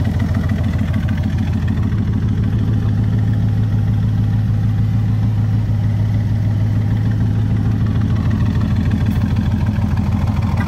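Chevrolet LS7 7.0-litre V8 idling steadily through side-exit exhaust pipes, a constant low rumble.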